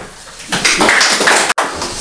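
Small audience applauding, starting about half a second in, with a momentary break in the sound about a second and a half in.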